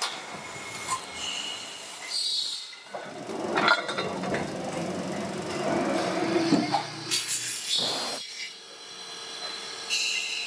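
Metal lathe turning a metal disc: cutting noise with scattered clicks and short high whines, louder in the middle.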